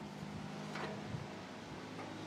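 Quiet room tone with faint handling sounds as an aluminium hitch-mounted cargo rack is lifted and tipped upright, with no clear knocks or clanks.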